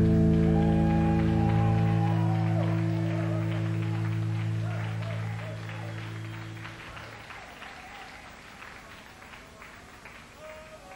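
A rock band's final chord held and fading out, gone after about seven seconds, while the audience claps and shouts.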